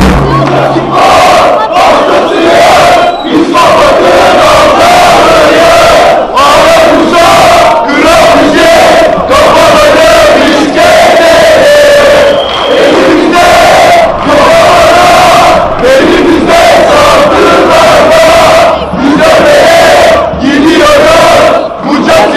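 Football supporters in the stand chanting a song together, many male voices in unison. The sung phrases are very loud and close, with brief gaps for breath every second or two.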